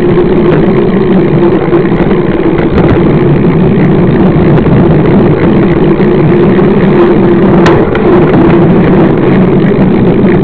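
Knobby mountain-bike tyre humming on asphalt, picked up very loudly by a camera mounted next to the wheel, as a steady drone mixed with wind rush and rattle. A single sharp click comes late on.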